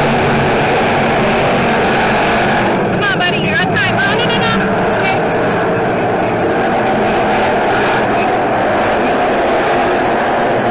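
Engines of a field of dirt-track stock cars running at race speed, a loud steady mix of several cars lapping the track.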